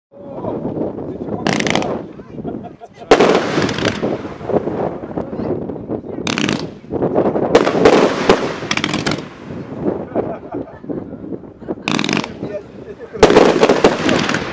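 P7745 fireworks battery firing: a string of sharp bangs at irregular intervals, some in quick clusters, as the shots burst in the air, with continuous noise between them.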